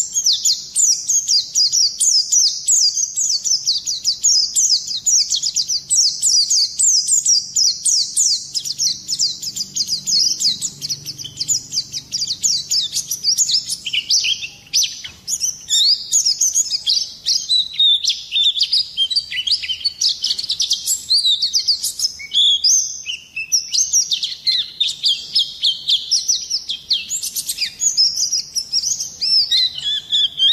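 Pleci (white-eye) singing a long, unbroken rolling song: fast, high twittering notes, many of them quick downward sweeps, packed closely together without a pause.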